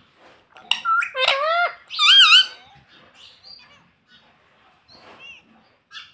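Indian ringneck parakeet calling: a run of loud, high-pitched calls with swooping pitch about one to two and a half seconds in, then softer, scattered chatter.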